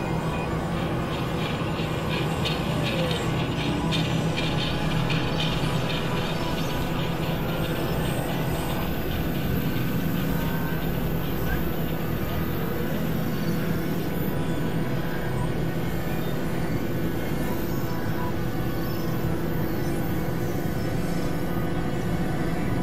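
Experimental electronic drone music from synthesizers: a dense, steady, grinding noise texture with several held tones underneath. A fast fluttering pulse sits in the upper range for the first several seconds.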